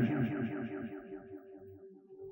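A man's voice run through a heavy echo effect, its quick repeats dying away over about two seconds.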